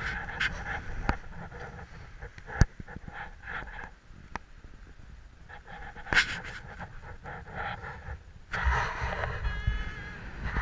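A person breathing hard close to the microphone while walking, with scattered scuffs and clicks; one sharp click about two and a half seconds in is the loudest sound.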